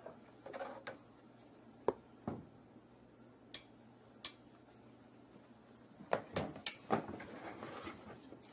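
Plastic parts of a compost tumbler being handled during assembly: scattered single knocks and clicks, then a quick run of several knocks about six seconds in.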